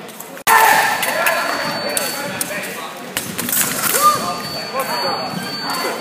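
Voices of people talking in a large sports hall, with scattered thuds of fencers' feet on the piste and wooden floor. The sound drops out for an instant about half a second in and comes back louder.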